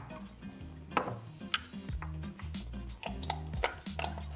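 Small hardwood puzzle blocks clicking and knocking against each other and the wooden tray as they are pushed and shifted by hand: a few short, sharp clicks spread over a few seconds, over quiet background music.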